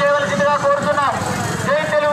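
A voice over a loudspeaker with long held notes and a bending pitch about halfway through, over low vehicle rumble.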